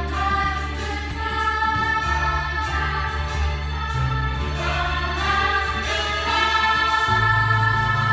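Girls' choir singing together in long held notes over an accompaniment with a steady low bass line, heard from among the audience in the hall.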